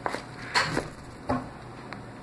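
A hand pressing and tapping on a taped cardboard shipping box: a few short dull knocks and rubbing sounds on the cardboard, the loudest about half a second in.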